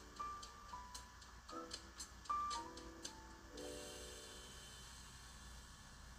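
Quiet background music: soft sustained melodic notes over a light ticking beat that drops out about halfway through.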